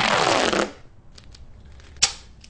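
Duct tape pulled off the roll in one loud rasping strip lasting about half a second, followed by a few faint ticks.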